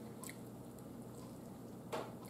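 Faint chewing of a mouthful of stewed chicken, with a soft click shortly after the start and another near the end.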